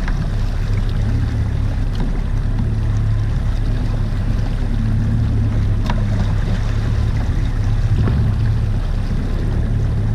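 Boat engine running steadily at trolling speed, a constant low hum with wind and water noise, broken only by a few faint clicks.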